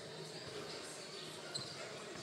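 Basketballs bouncing faintly on a hardwood gym floor, a few scattered thuds over the low background hum of a large, echoing hall.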